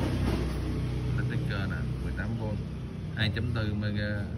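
Low rumble of a passing motor vehicle that eases off about a second in, with people talking in the background.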